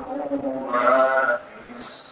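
A male Quran reciter chanting in the melodic mujawwad style through a microphone, holding one long, ornamented note about a second in before pausing.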